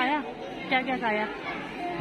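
Speech: short stretches of talking, with crowd chatter behind.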